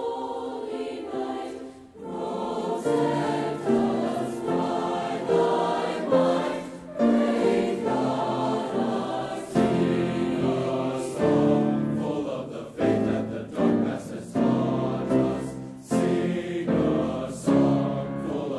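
Large mixed high-school choir singing in full harmony, holding sustained chords that change every second or so. After a brief dip about two seconds in, the low voices come in beneath the upper parts.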